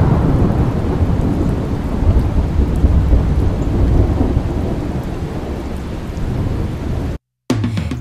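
A loud, steady rumbling hiss, a sound effect laid under a logo animation, heaviest in the low end; it eases slightly and cuts off suddenly about seven seconds in.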